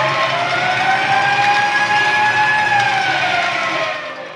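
Hockey arena crowd cheering, with a long high tone over it that rises slowly and falls away near the end.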